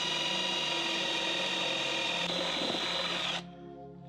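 Power drill running a long 3/8-inch bit through the solid guitar body, boring a channel for pickup wiring from the pickup cavity to the electronics cavity. It runs steadily with a high whine and cuts off about three and a half seconds in as the bit comes through.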